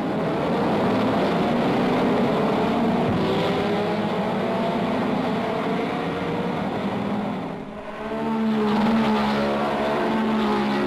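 Several racing sports-car engines revving hard together as the field accelerates away from the start, their pitches rising and falling over one another. The sound dips briefly about three-quarters of the way through, then another pack of cars comes past at full throttle.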